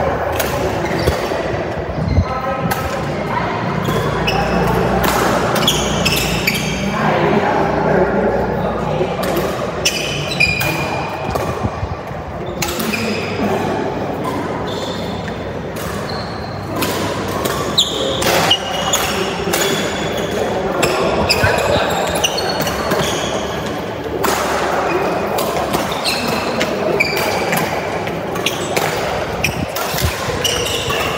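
Badminton rally: sharp racket strikes on the shuttlecock and short shoe squeaks on the court mat, echoing in a large hall, with voices in the background.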